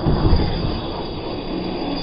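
Large electric RC monster trucks running on dirt: a steady high motor and drivetrain whine over the rush of tyres and the truck's drive.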